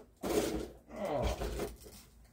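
A person's breathy exhale, then a wordless vocal sound that falls in pitch, like a drawn-out 'hmm'.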